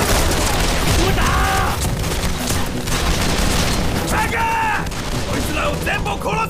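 Dense, continuous small-arms gunfire crackling, with deep booms underneath: a staged battle soundtrack. Shouted voices break through it a few times.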